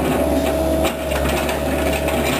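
Excavator's diesel engine running steadily below, a low drone with a constant whine over it and a few light knocks from the machine as it works.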